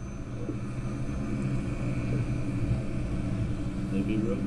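Motor of a radio-controlled model seaplane running steadily as it comes in to land, growing a little louder about half a second in. It is heard played back through a computer's speakers.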